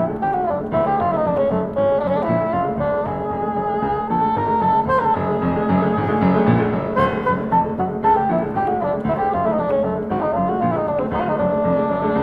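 Bassoon and piano playing together: the bassoon winds through quick melodic runs that rise and fall over a steady piano accompaniment.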